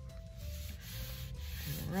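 Palm rubbing across the back of a folded sheet of paper, a dry, papery rubbing that presses the wet paint inside against the paper. A voice begins near the end.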